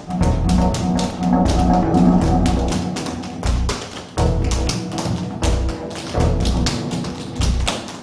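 Tap shoes striking a stage floor in quick, irregular taps over music with a low bass line.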